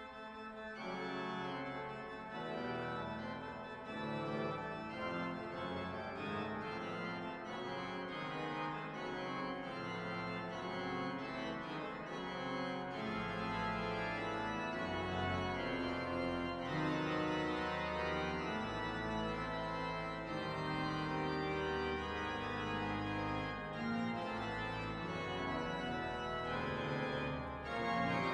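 Pipe organ playing slow, sustained chords, with deep bass notes coming in about halfway through.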